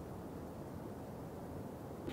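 Faint, steady background noise, a low rumble with light hiss, with no distinct events.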